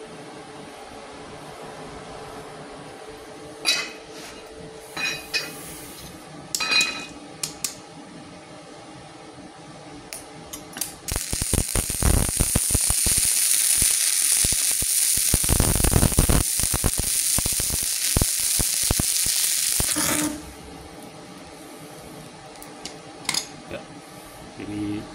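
Stick (MMA) welding arc from an inverter welder at 196 amps. A few short metallic clicks come first; the arc catches about eleven seconds in, crackles and hisses steadily for about nine seconds, then stops abruptly.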